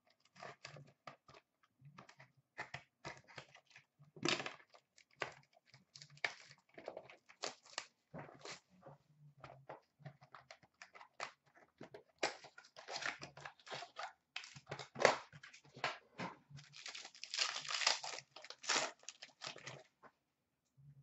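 Hockey card packs being torn open and their wrappers crinkled, with cards handled between them: an irregular run of crackles, rustles and clicks, busiest in the last third.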